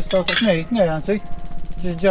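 A man's voice, with the chink of glass as a small glass bottle is lifted from a pile of broken glass and crockery.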